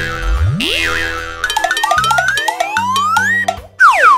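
Cartoon sound effects over light children's music: a springy boing about half a second in, then a series of rising pitch slides, and a quick falling swoop near the end, as toy-truck parts snap together.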